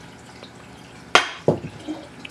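Nyos acrylic fish trap being lifted through reef-tank water: a low water hiss with two sharp knocks and splashing about a second in, as the trap is pulled up.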